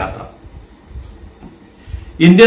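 A man's voice trails off at the start, then a faint steady low rumble of background noise fills the pause.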